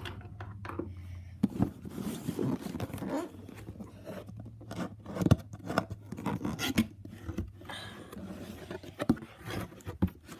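A cardboard box being pried open by hand: the flaps rubbing and scraping against each other, with irregular knocks and paper rustling.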